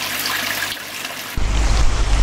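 Steady rushing and trickling of pond water. About a second and a half in, the sound cuts abruptly to a deep rumble of wind on the microphone over the water.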